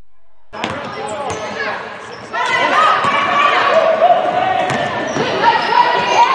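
Live basketball game sound in a gym: a ball bouncing on the hardwood court, with voices from players and spectators. The sound starts suddenly half a second in and gets louder about two seconds in.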